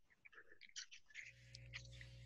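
Near silence, with faint scattered ticks and a faint low hum that starts a little past the middle.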